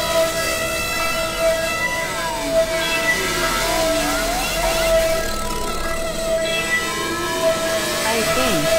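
Experimental synthesizer drone music: several steady held tones, with short gliding tones sweeping up and down through the middle.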